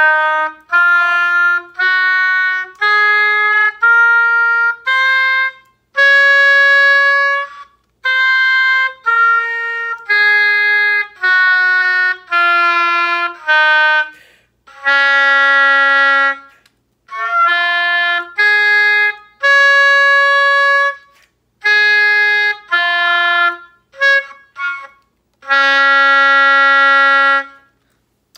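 Oboe playing the D-flat concert scale, one separately tongued note at a time: it climbs from low D-flat to the D-flat an octave above, holds it, steps back down and holds low D-flat. It then plays the D-flat arpeggio, with a long high D-flat in the middle and a few short broken notes before ending on a long low D-flat.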